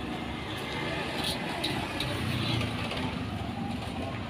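Steady low rumble of street background noise, with a few faint clinks.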